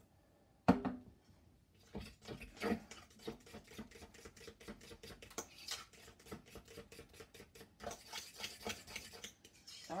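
A fork scraping and clicking rapidly against a bowl as it stirs a thick flour-and-water batter, after one sharp knock about a second in.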